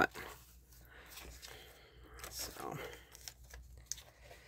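Glossy magazine paper being handled and folded over, with soft, irregular rustling and creasing.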